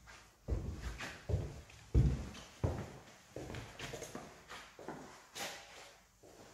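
Footsteps walking through an empty house, about two a second, the loudest about two seconds in.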